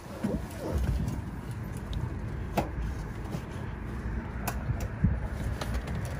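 A few sharp clicks, the clearest about two and a half and four and a half seconds in, over a steady low rumble.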